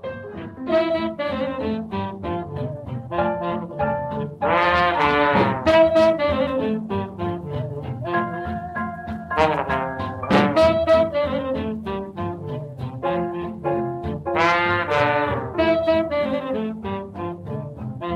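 Restored 1945 jazz record: a small band's brass and saxophones playing over double bass. The horns swell into loud ensemble chords three times, about five seconds apart.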